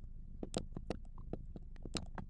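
Faint, irregular ticks and scratches of a marker writing a word on a glass writing board.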